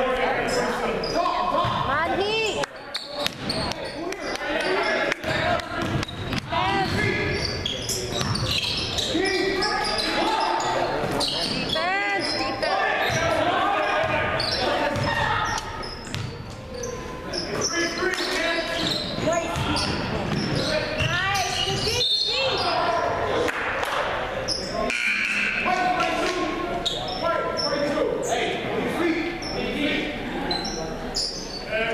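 A basketball bouncing on a hardwood gym floor during play, under the voices of players and spectators echoing in a large hall.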